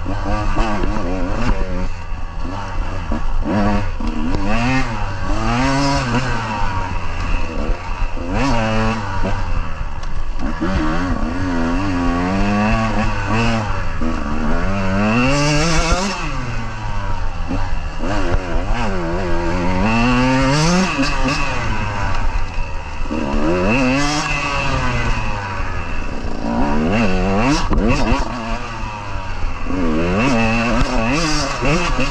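KTM 150 two-stroke dirt bike engine being ridden hard, revving up and falling back over and over, its pitch climbing and dropping every second or two with throttle and gear changes.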